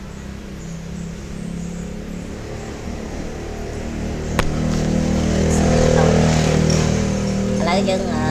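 A motor engine running steadily, growing louder to its loudest about six seconds in and then easing slightly, with a single sharp click about four and a half seconds in.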